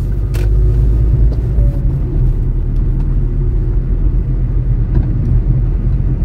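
Steady low rumble of a car's engine and tyres heard from inside the cabin while it drives along at road speed, with a single brief click about half a second in.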